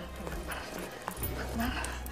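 A woman whimpering and sobbing softly in distress, with a brief click about a second in.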